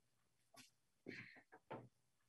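Near silence on the call line, with a few faint, brief sounds about a second in.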